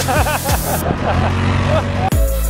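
A man laughing in quick repeated bursts over a steady low engine drone.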